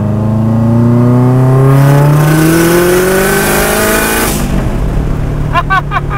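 The turbocharged engine of an all-wheel-drive Mazda Miata, heard from inside the cabin, pulling hard under acceleration, its pitch climbing steadily for about four seconds before it drops off suddenly to a lower steady drone. The driver laughs near the end.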